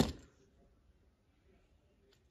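Near silence: quiet room tone, after a short sound right at the start that dies away within a fraction of a second.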